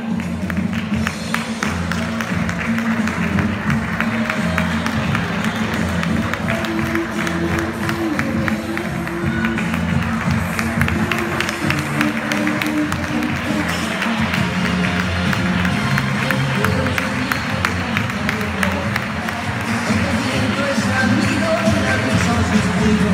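Recorded music played over loudspeakers for a runway walk, with an audience clapping along.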